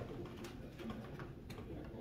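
Faint room murmur in a quiet pause, with a few soft, irregular clicks and rustles.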